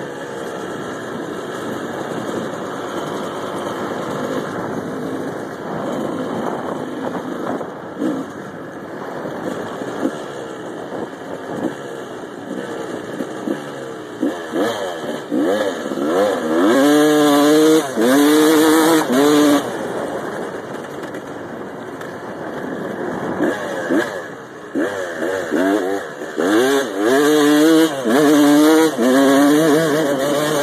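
Yamaha YZ250 two-stroke dirt bike engine under way, recorded from on the bike. Its pitch rises and falls with each twist of the throttle and each gear change. It is revved hard and held high twice, about halfway through and again near the end.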